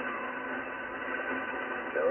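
Steady hiss and static from an HF transceiver's speaker, tuned to 7.200 MHz lower sideband on the 40-metre amateur band, in a gap between transmissions. The sound is cut off above about 3 kHz and carries a faint steady whistle.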